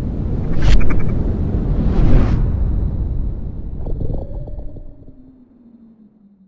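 Produced logo-intro sound effects: a deep rumble with two sharp whooshes about a second and a half apart, then a low ringing tone that slides slightly down and fades out near the end.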